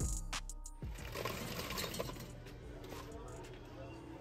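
Background music with a steady beat cuts off about a second in. Then comes a rattling clatter of ice being dispensed from a fountain-drink ice chute into a paper cup, with some store noise behind it.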